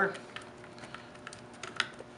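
Light, irregular metal clicks and ticks of a 7 mm socket driver working the screws that hold the alternator's plastic rear cover, as they are loosened, with a few sharper clicks in the second half.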